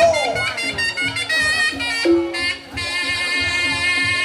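Reog Ponorogo gamelan accompaniment: a slompret shawm plays a wavering, sliding melody over steady drum strokes and held gong-chime tones.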